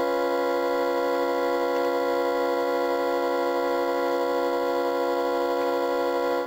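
A single keyboard chord, organ- or synthesizer-like, held steady with no change in pitch or loudness.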